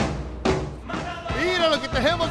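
A sharp thump near the start, then a man's voice calling out in short exclamations during the second second, over low background music.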